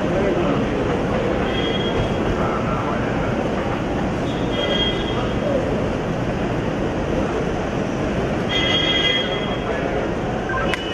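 A steady, dense rumbling din with indistinct voices in it. A few short, high-pitched tones come through about two, five and nine seconds in.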